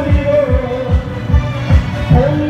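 Singing over a recorded backing track with a steady bass-drum beat, played loud through a street PA loudspeaker.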